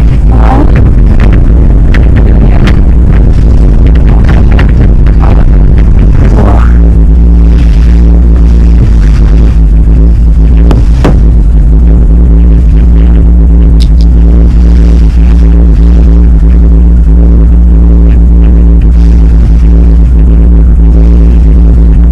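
Loud low rumble inside a cable car cabin, with a run of knocks over the first six seconds as the cabin rolls past a tower's sheaves, then a steady low droning hum as it travels along the cable.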